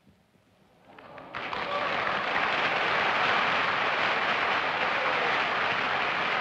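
Studio audience applause: near quiet for about a second, then the clapping builds quickly and holds steady.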